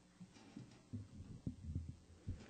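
A few soft low thuds about a second in, over a faint steady hum.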